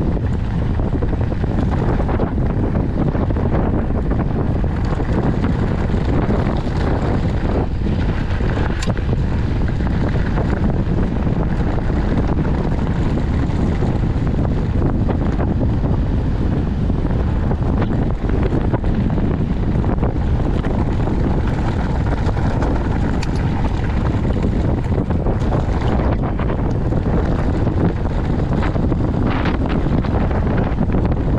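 Wind buffeting the microphone of a handlebar-mounted action camera on a moving mountain bike: a steady low rush, with a few faint ticks from the bike on the dirt trail.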